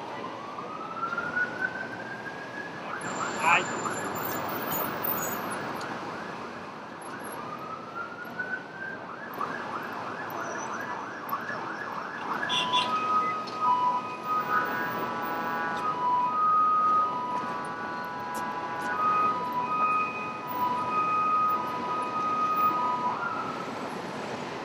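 Emergency vehicle siren on a city street: a rising wail, then a rapid yelp, another rise and yelp, then a switch about halfway through to a steady alternating two-tone hi-lo pattern that runs almost to the end, over traffic hum.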